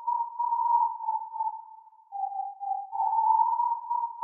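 A lone sine-like synthesizer tone, high and wavering, plays a slow line with no drums or bass under it. About two seconds in it dips slightly in pitch, then it rises back and swells again.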